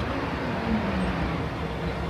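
Chevrolet SUV's engine and tyres as it rolls up and slows to a stop, the engine note dropping as it slows.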